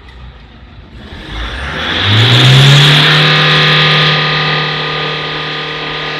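Toyota Fortuner's diesel engine revved up from a faint idle about a second in. The pitch climbs over the next two seconds, then is held steady at raised revs, a little quieter in the last part.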